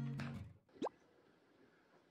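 Background music fades out about half a second in, followed by a single quick rising 'bloop' sound effect, then faint room tone.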